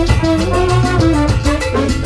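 Salsa band music: held brass notes over a strong bass line and a steady percussion beat.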